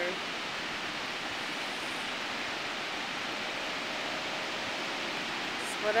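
Ocean surf on a sandy beach, heard as a steady, even wash of noise with no single wave crash standing out.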